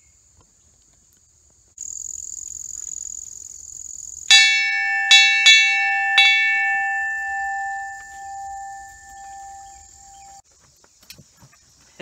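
A large hanging metal dinner bell rung by tugging a cord on its clapper, rung to call the dogs to eat. It gives four quick strikes, then a long ring that fades and cuts off suddenly.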